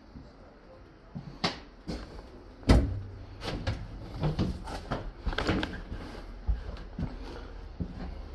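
Doors of a passenger railway carriage being handled, opened and shut: a heavy clunk about three seconds in, then a run of latch clicks and knocks.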